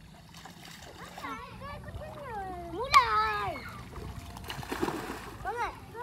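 Young children's high voices calling out, loudest about three seconds in, then a splash of shallow muddy water a little before the end as a child slides off the bank into it.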